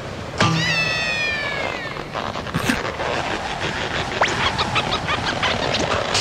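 A cartoon larva's long whining cry, high and slowly falling in pitch for about a second and a half. It is followed by scattered short squeaks and small comic sound effects.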